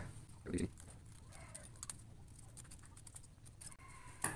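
Faint sounds of a paper sewing pattern being cut out with scissors and handled: soft rustling with a few light clicks.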